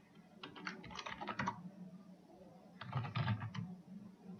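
Computer keyboard typing in two short bursts of keystrokes, the first about half a second in and the second about three seconds in.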